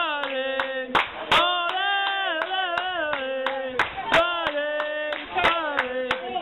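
Football supporters singing a chant in long held and sliding notes, punctuated by handclaps.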